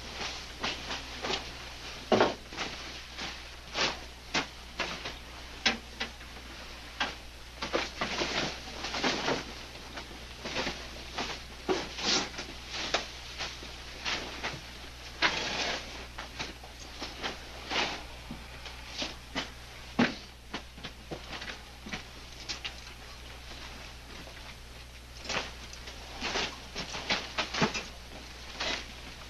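Irregular rustling and crackling, several short clicks a second with a few louder snaps, over a steady low hum.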